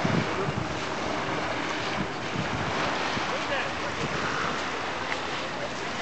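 Steady rushing noise of wind blowing across the microphone.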